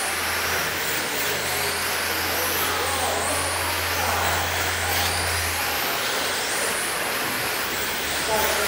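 Several 1/10-scale electric RC sprint cars racing on a dirt oval, their motors whining high and rising and falling in pitch as they pass, over a steady hiss. A low hum runs underneath and stops about three-quarters of the way through.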